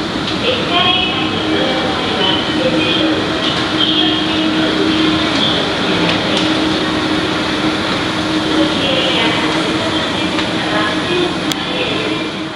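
Escalator running with a steady mechanical rumble and a constant low hum, heard from the moving steps in an underground station.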